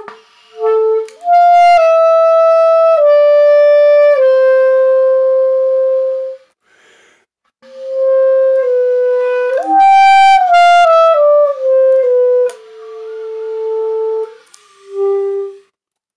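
A 1940s Evette Schaeffer wooden clarinet played solo: two phrases of sustained notes stepping downward, with a short breath pause between them, ending on a long held note and a brief final note.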